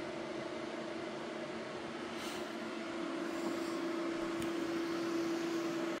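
A steady mechanical hum with a pitched drone, growing a little louder about three seconds in, with a brief swish about two seconds in and a faint click later.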